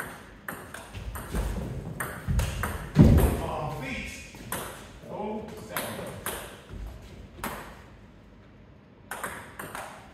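Table tennis ball clicking off bats and bouncing on the table in a quick rally, ending in the loudest, heavier hit about three seconds in. A few more ball clicks follow, then the clicks pick up again near the end.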